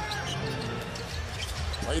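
A basketball being dribbled on a hardwood court, with a few sharp bounces over steady arena crowd noise.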